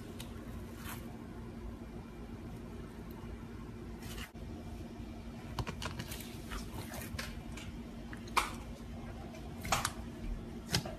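Clear slime worked by fingers, giving scattered sharp clicks and pops as it is pressed and pulled. The clicks are sparse at first and come more often in the second half, with two louder snaps near the end.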